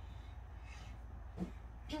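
Quiet room tone with a steady low hum, broken by one brief soft sound about one and a half seconds in.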